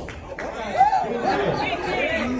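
Young children's voices chattering, high-pitched and overlapping, in a large hall.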